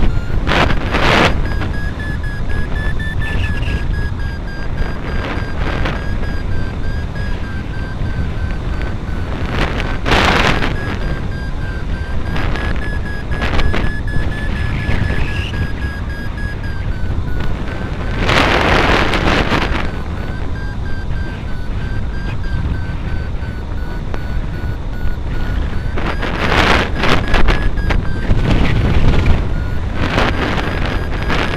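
Wind rushing over the camera microphone of a hang glider in flight, rising in gusts about a second in, around ten seconds, around eighteen seconds and again near the end. A thin, steady high tone that wavers slightly in pitch sounds throughout under the wind.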